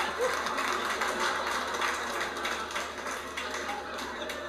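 Comedy club audience laughing and clapping, a dense crackle of many claps that slowly fades.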